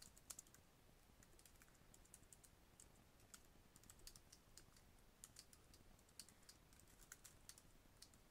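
Faint typing on a computer keyboard: quick, irregular key clicks.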